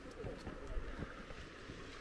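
Wind rumbling on the microphone outdoors during an uphill walk, with a few short, low thumps scattered through it.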